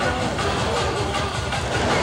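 Loud, continuous clatter of temple-procession percussion, with drums and cymbals beating rapidly and without a break.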